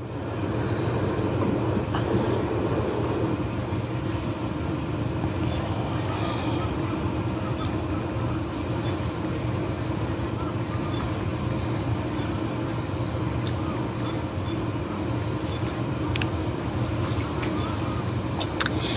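Steady low rumble of background noise with no speech, broken by a few faint clicks.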